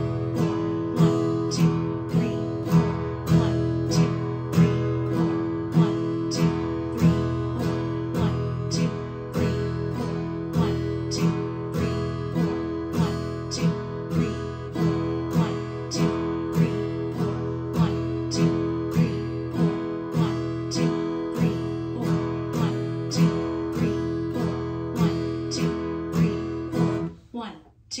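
Acoustic guitar strummed once on every beat at 100 beats per minute, alternating downstrokes and upstrokes on one held chord, in time with a metronome's clicks. The strumming stops about a second before the end.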